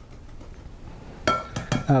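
Wire whisk stirring thick cream cheese frosting in a bowl, soft and steady, with a sharp ringing clink about a second and a quarter in.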